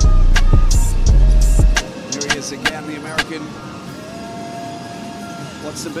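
Hip-hop track with heavy bass and a hard beat, which cuts off about two seconds in. After that comes the quieter sound of the game broadcast: arena crowd and court noise.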